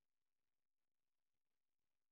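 Near silence, with no distinct sound.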